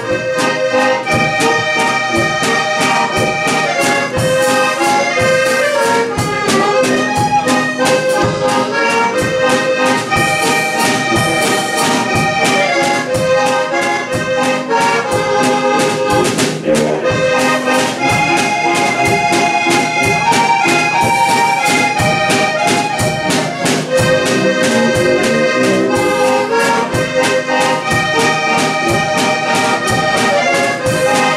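Heligonka, the Czech diatonic button accordion, playing a lively traditional tune in held reedy chords and melody, with a steady beat behind it.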